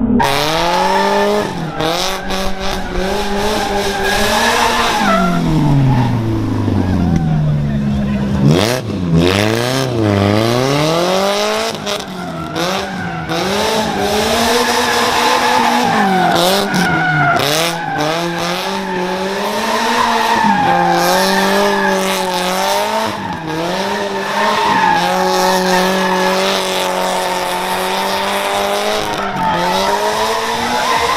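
Toyota Corolla KE70 drift car engine held high in the revs, dipping and surging again and again as it is driven sideways, with the tyres squealing and skidding throughout.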